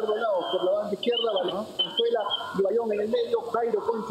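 Speech only: a man talking in Spanish without a break.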